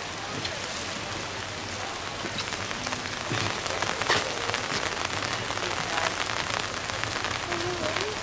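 Steady rain falling: an even hiss with many small drop ticks, and one sharper tick about four seconds in.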